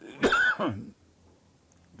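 A man coughs once, a single loud burst lasting under a second, starting about a quarter-second in.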